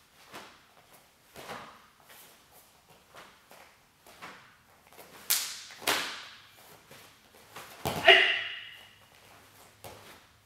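Snapping of a taekwondo uniform's sleeves and jacket with each fast block and strike, a string of sharp whip-like cracks, two of them loud about five and six seconds in. The loudest sound is a hard thump about eight seconds in with a short pitched ring after it.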